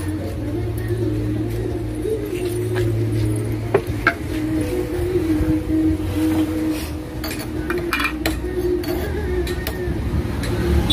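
Background music with a wavering melody line, over which a few sharp clinks sound as metal and stone kitchenware is handled, about four seconds in and again near eight seconds.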